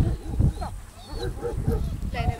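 A dog whining in a string of short rising-and-falling cries, with people's voices mixed in.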